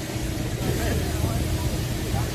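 Steady low rumble and hum of machinery running on an airport apron beside a parked airliner, with people talking over it.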